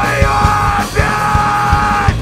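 Live hardcore punk band playing: distorted guitars and a steady drumbeat under shouted vocals.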